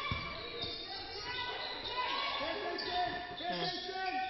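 A basketball bouncing repeatedly on a hardwood court as it is dribbled, echoing in the gym, with players' voices calling.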